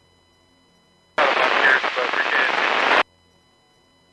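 A two-way radio transmission breaking in about a second in: nearly two seconds of loud static with a garbled voice beneath it, cutting off abruptly.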